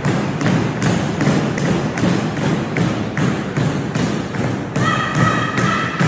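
Steady rhythmic thumping, about two and a half beats a second, with a held tone of several pitches joining near the end.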